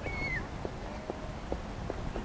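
Outdoor ambience with a steady low rumble and a series of soft, irregular clicks, and a brief high squeak near the start.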